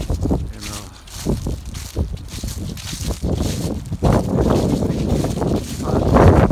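Wind buffeting a phone microphone outdoors, growing heavier in the last couple of seconds, over the soft footfalls of someone walking on grass.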